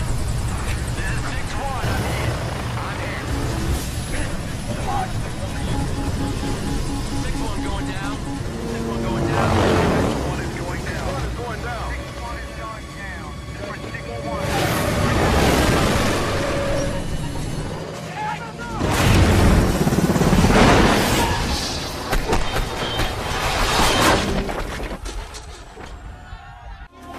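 War-film battle soundtrack: a music score mixed with combat sound effects, with several loud explosion booms, the loudest in the second half.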